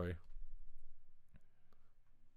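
A man's voice trails off into a close microphone at the start, then a quiet room with two faint short clicks about one and a half seconds in.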